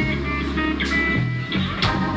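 Live pop-rock band playing: sustained bass notes and guitar, with a sharp cymbal-like stroke about once a second.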